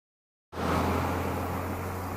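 Steady street ambience of distant road traffic with a low hum, starting abruptly about half a second in.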